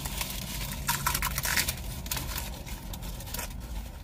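Crispy fried taco shells crunching and crackling as they are bitten into and chewed, mixed with the crinkle of paper wrappers. The crackles come in a dense run about a second in.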